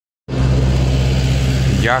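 A steady low engine hum, like a vehicle idling close by, cutting in suddenly just after the start. A man's voice begins near the end.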